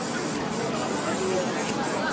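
Aerosol spray-paint can hissing as paint is sprayed onto the board, in bursts that stop briefly about half a second in and again near the end.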